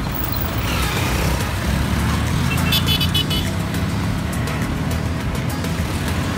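Road traffic: a steady low rumble of car engines and tyres close by, with a short high-pitched beep about three seconds in.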